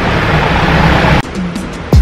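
A steady rush of city street noise that cuts off abruptly about a second in, giving way to background music with a deep falling bass hit near the end.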